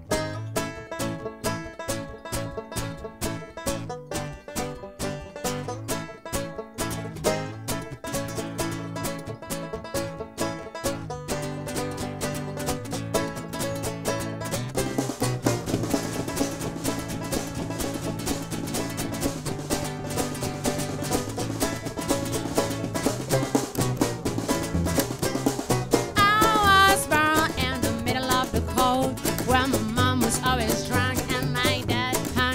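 Acoustic country band playing a passage without words: banjo and Spanish guitar picking over plucked double bass and a drum kit. The playing is sparse, with short gaps, then fills out and grows louder about halfway through.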